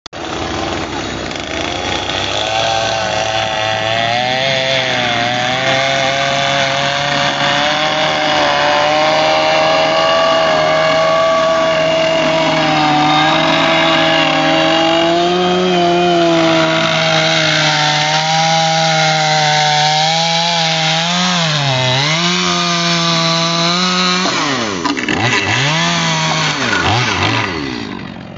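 Stihl two-stroke chainsaw running at high revs while cutting through stacked framing lumber, its pitch sagging and recovering under load. Near the end the revs drop and rise again several times as the throttle is eased and reopened.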